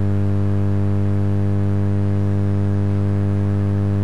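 Loud, steady electrical hum on the audio feed: an unchanging low buzz with a ladder of even overtones.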